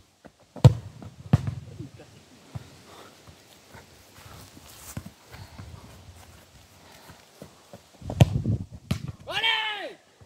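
A football kicked sharply, with a second lighter strike about half a second later, then soft touches and footsteps on grass; near the end another knock of the ball and a person's drawn-out shout.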